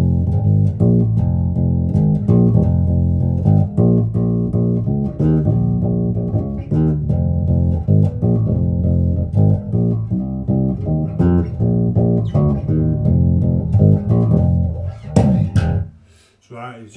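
Electric bass, a Richwood 70s-style Jazz Bass copy played fingerstyle through a Laney RB4 bass amp and 1x15 extension cabinet: a steady run of plucked notes. The playing stops just before the end with a short scratchy string noise.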